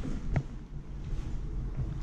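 A steady low rumble with a single short knock about a third of a second in.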